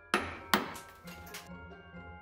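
Two hard hammer blows on a steel bench block, about half a second apart, striking a loose gemstone, followed by a few fainter clicks. Light Christmas-style music with chimes plays underneath.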